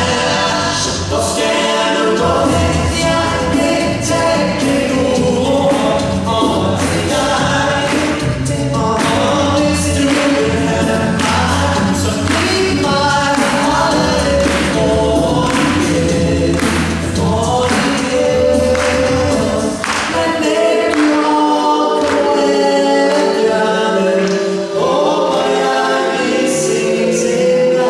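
Male a cappella group singing in close harmony over a deep sung bass line, with vocal percussion keeping a steady beat. The bass drops out about twenty seconds in, leaving the upper voices and the beat.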